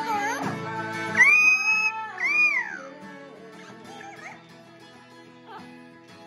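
An Amazon parrot calls along with two strummed acoustic guitars. About a second in it holds one long, high whistled note, then gives an arching call that rises and falls, followed by a few smaller calls near the four-second mark.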